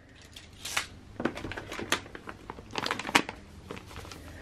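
Rummaging in a plastic storage box: a scatter of light clicks and knocks mixed with the rustle and crinkle of packets being handled, busiest in the middle.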